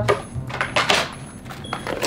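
A few small clicks and clinks of cosmetic items, a lotion bottle and lip gloss, being picked up off a dresser top and dropped into a handbag.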